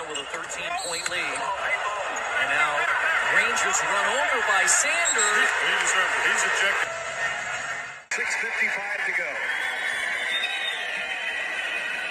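Basketball TV broadcast audio: a commentator talking over arena crowd noise, with an abrupt cut to another clip about eight seconds in.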